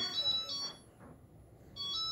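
Electronic beeps from a self-balancing hoverboard as a foot is set on it: a double beep, then another beep near the end.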